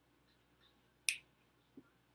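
A single sharp finger snap about a second in, in an otherwise quiet room, followed by a faint soft knock.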